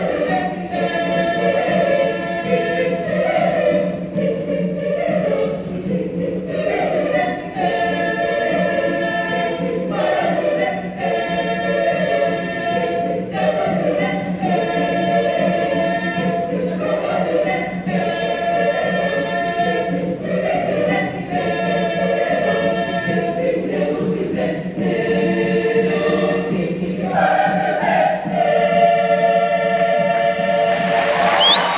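Girls' choir singing a lively zilizopendwa arrangement in short phrases of about two seconds that repeat through the passage.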